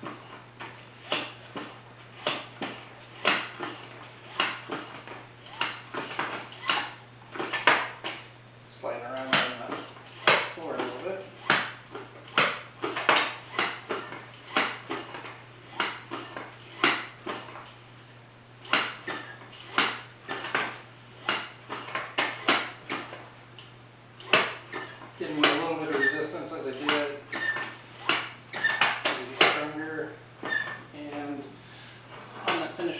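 Double-cylinder foot pump worked by foot, clacking sharply with each stroke at about two strokes a second, with a couple of short pauses, as it pumps up a bicycle tyre.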